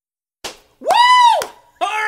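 A person's voice making wordless, swooping cries: after a short click, one long call glides up to a high pitch and back down, and a second call falls from high near the end.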